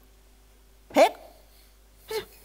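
A woman's single short questioning "Hä?", rising sharply in pitch, about a second in; otherwise only faint room tone.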